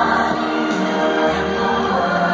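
Show music with a choir singing, played over an arena sound system.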